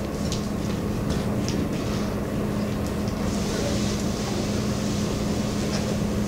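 Steady background room noise with a constant low hum, like ventilation or machinery, with a few faint ticks early on and a high hiss joining about halfway through.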